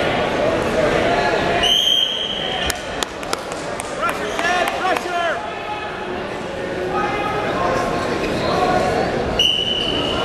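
Referee's whistle blown twice, a short shrill blast about two seconds in and another near the end, stopping the wrestling and then restarting it. Voices shouting and chattering in a reverberant gym, with a few sharp slaps or thuds on the mat.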